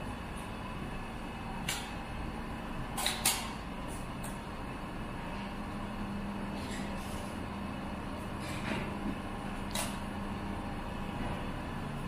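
A handful of sharp clicks and small knocks, scattered a few seconds apart with a quick double near the start, from parts being handled and fitted at the handlebar of a parked sport motorcycle, over a steady faint hum.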